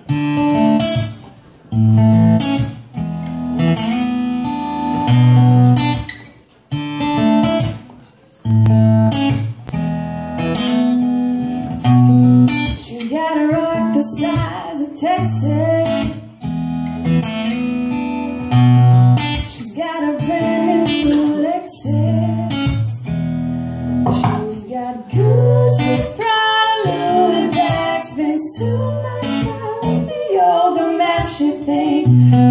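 Acoustic guitar strummed in a steady rhythmic pattern, with a woman's voice singing over it, more clearly in the second half.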